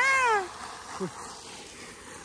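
A baby's drawn-out high-pitched squeal that rises and then falls in pitch, ending about half a second in.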